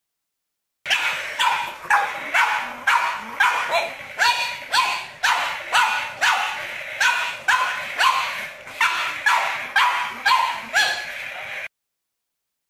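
Pug barking over and over in short, high barks, about two a second, starting about a second in and stopping just before the end.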